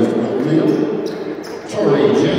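Players' voices calling out on a gym basketball court, with a few short thumps of a basketball bouncing on the hardwood floor.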